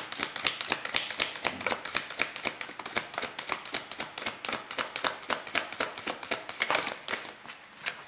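A deck of oracle cards being shuffled by hand: a rapid run of light card clicks and flutters that thins out and stops near the end.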